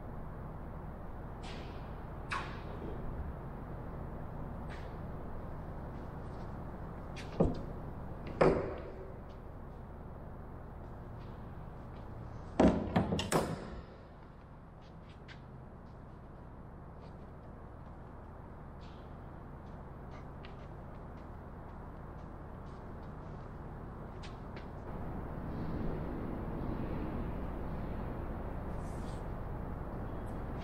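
Scattered knocks and clunks of hand work on a clamped wooden fuselage. There are single knocks about seven and eight seconds in and a quick cluster of louder ones around thirteen seconds, over a steady low workshop hum.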